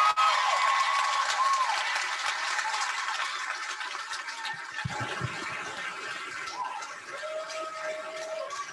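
Audience applauding, with a few voices over the clapping; the applause slowly tapers off.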